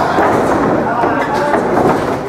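Indistinct voices echoing in a large hall, with a few faint knocks as wrestlers move on the ring mat during a pin cover.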